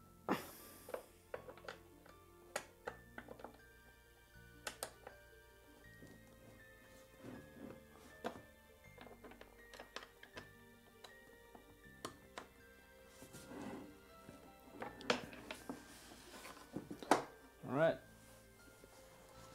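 Background music with sustained notes, over irregular clicks and knocks from an office chair's plastic armrest frame being handled and screwed onto the seat.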